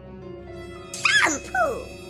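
Two short high-pitched whimpering cries from a cartoon voice about a second in, bending up and down in pitch, over steady background music.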